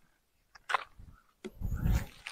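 Rustling and crunching of a cloth bag and dry grass and leaves being handled on the ground, with a brief crisp rustle and then a louder scuffling noise with a low rumble near the end.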